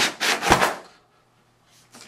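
Cardboard carton scraping and rubbing against its foam packing as it is pulled up off the boxed unit, with a knock at the start and a thump about half a second in. The scraping stops about a second in, and a short rustle comes near the end.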